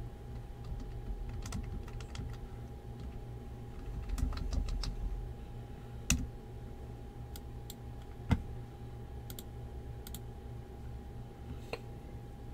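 Scattered clicks of a computer keyboard being typed on, a few at a time with pauses, the sharpest about eight seconds in, over a steady low electrical hum.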